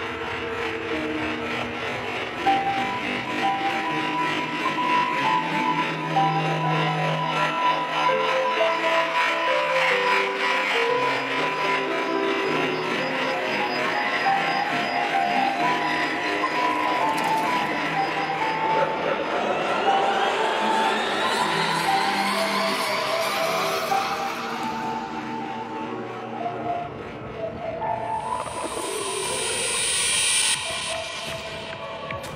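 Intro of a dark psytrance track at 154 BPM: melodic synth notes without a kick drum, with a long rising sweep building over the last third toward the drop.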